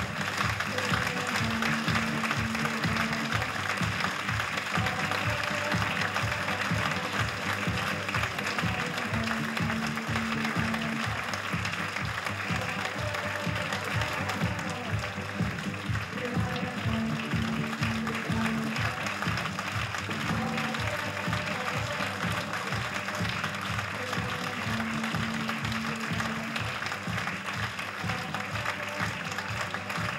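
Theatre audience applauding during a curtain call, with music playing along underneath, its short phrase of low notes recurring every few seconds.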